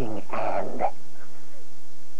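A man's wordless comic vocalizing: a short yelp that falls in pitch, then a raspy, strained burst, all within the first second.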